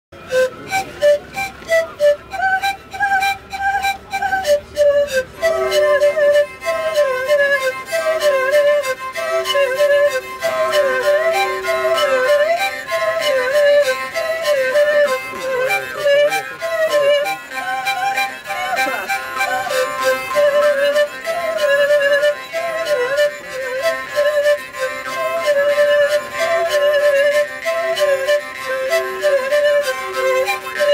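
Russian folk trio playing a Kursk dance tune on kugikly (panpipes), gudok (bowed three-string fiddle) and vargan (jaw harp). A sparser, pulsing opening lasts about five seconds, then the texture fills out with a wavering melody over a recurring held tone.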